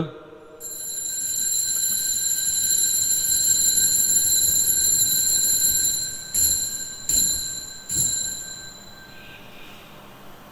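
Altar bell ringing at the elevation of the consecrated host: a steady high ringing, then three separate strikes about a second apart near the end before it fades out.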